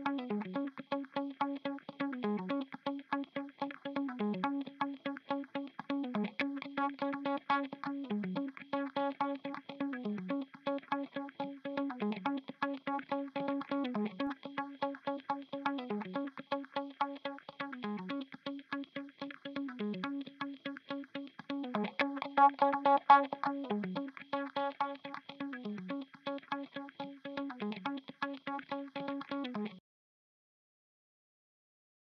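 Electric guitar loop playing a one-bar phrase over and over, about every two seconds: a held note, then a downward slide. It is briefly louder and brighter a little past two-thirds of the way through, and it cuts off at the end.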